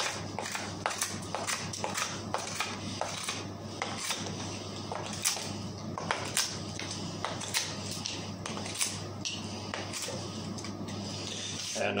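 Fiskars Pro Builder knife hacking and shaving at the end of a wooden chair leg: irregular sharp chops and scrapes of the blade on wood, coming quickly in the first few seconds and more sparsely after.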